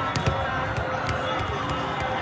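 Volleyballs being struck and bouncing on the courts of a large hall, about five sharp thwacks in two seconds, over the chatter of a crowd.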